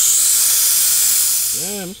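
Compressed air hissing steadily from a tire-inflator hose, a strong flow that cuts off shortly before the end.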